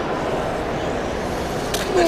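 Small tracked sumo robots driving on their electric motors and tracks, over the steady noise of a crowded hall, with a sharp click near the end.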